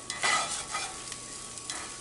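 Spatula stirring and scraping sautéed sweet potatoes, onions and red beans in a cast iron frying pan, the food sizzling over the heat. A louder scrape comes just after the start, with softer strokes after it.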